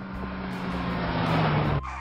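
Car engine sound effect: a rushing noise with a low engine tone that sinks slightly in pitch, growing louder and then cutting off abruptly near the end.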